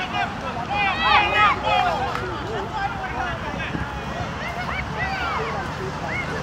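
Indistinct shouting and calling from players and spectators, many overlapping voices, with a low wind rumble on the microphone.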